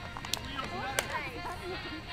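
Background voices of players talking and calling out, with a few sharp hand slaps as they high-five one another.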